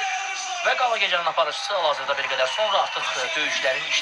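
Speech only: a man talking into a handheld microphone.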